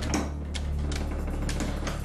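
Ratchet of a wooden rack's windlass clicking several times at uneven intervals as the handle is turned to add tension, over a low steady background drone.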